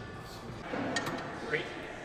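Gym background between talk: faint voices with a single sharp click about a second in.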